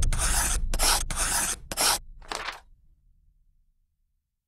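Logo-animation sound effect of scratchy drawing strokes, like a pencil scribbling: five quick strokes, the last one fainter, over a fading low rumble.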